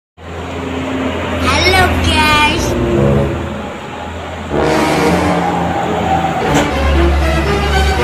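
Road traffic: a car and heavy cargo trucks passing, with a steady low rumble of engines and tyres. Gliding pitched tones come and go over it, once about one and a half seconds in and again from about four and a half seconds.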